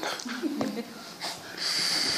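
A man laughing under his breath: a few short, soft voiced chuckles, then from a little past halfway a long, breathy exhale of laughter.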